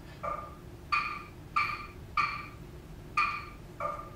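Six short synthesized pings from a racket-stroke sonification prototype, each set off by a swing of a table tennis racket. They come at uneven intervals of about two a second, and each has a sharp attack, a few clear pitches and a quick decay.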